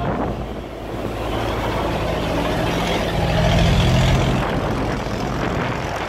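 Engine of a wooden cargo boat running steadily as the boat motors past close by through a sluice gate, over the rush of churned water; it grows loudest about three to four seconds in.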